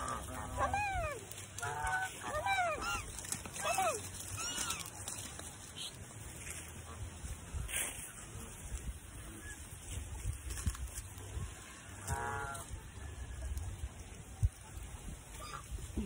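Domestic geese honking: a quick run of arched honks in the first four seconds, then another call about twelve seconds in.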